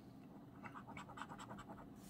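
Coin scraping the latex coating off a lottery scratch-off ticket: faint, short scratching strokes, several a second, starting about half a second in.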